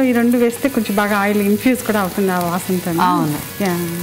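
Ginger and garlic sizzling in hot oil in a pot, stirred with a spatula, under a woman's voice speaking throughout.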